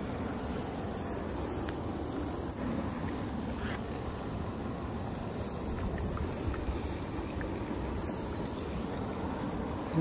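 A boiling geothermal mud pool: a steady, low churning noise with no break.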